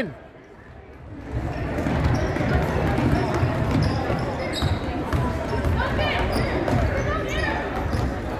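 A basketball dribbled on a hardwood gym floor, with repeated bounces over the chatter of a crowd in a large, echoing gym. It is quieter for about the first second, then the crowd noise picks up.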